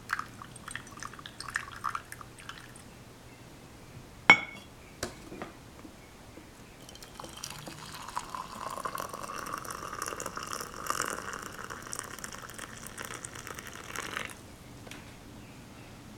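A few small drips and ticks, then a single sharp clink about four seconds in. Hot water is then poured in a steady stream from a metal kettle into a clay teapot of Longjing tea leaves for about seven seconds, stopping shortly before the end.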